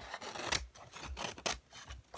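Pages of a paperback book riffled and flicked close to the microphone. A dense papery rustle comes first, then several quick page flicks.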